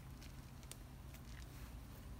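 Quiet background: a low steady hum with a few faint, short ticks.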